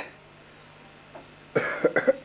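A man coughing: a short run of harsh coughs starts about a second and a half in. Before it there is only a faint steady hum.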